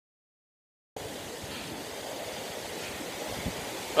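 Mountain runoff creek rushing over rocks, a steady wash of water noise that starts suddenly about a second in after dead silence.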